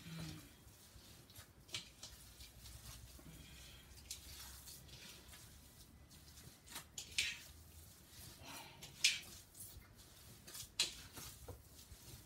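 Hands squeezing and kneading a raw ground-beef meatloaf mixture in a bowl: faint, irregular squishes.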